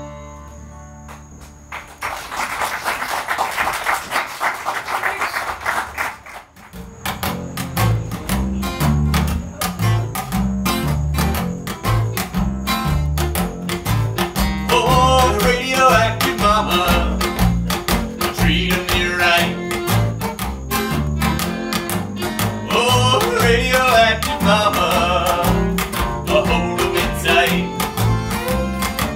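A last acoustic guitar chord dies away, then about four seconds of audience applause. About seven seconds in, the next tune starts: an acoustic string trio, with upright bass notes on the beat under strummed acoustic guitar and a fiddle carrying the melody from about halfway.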